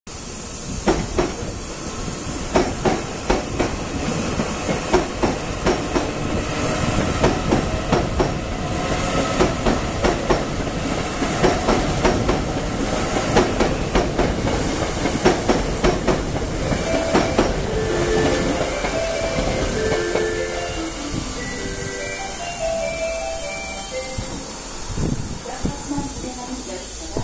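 Korail 368000-series ITX-Cheongchun double-deck electric train running past, a steady rumble with its wheels clicking over rail joints and points in rapid pairs. After the clicking stops, a run of short pitched notes steps up and down near the end.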